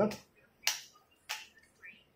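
Two short, sharp crackles of thin plastic protective film being peeled off a new smartphone's screen, a little over half a second apart, with a fainter crackle near the end.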